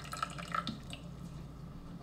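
Faint dripping of liquid, a few small drips in the first half second or so, over a low steady hum.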